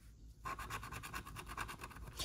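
A handheld scratcher tool rubbing back and forth over a lottery scratch-off ticket, scraping off the coating in rapid, even strokes that begin about half a second in.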